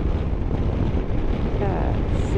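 A BMW F700GS motorcycle riding at road speed: a steady rush of wind on the microphone over the engine running underneath.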